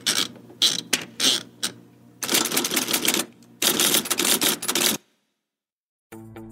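Sound effects opening a Home Depot advertisement: a quick run of sharp clicks and knocks, then two longer noisy bursts of about a second each, ending abruptly.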